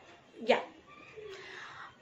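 A woman's single short spoken syllable, "ya", about half a second in, otherwise only faint room sound.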